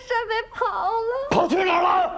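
A young woman speaking through tears, her voice wavering and wailing, then a man's voice breaking in loudly and sharply about a second and a half in.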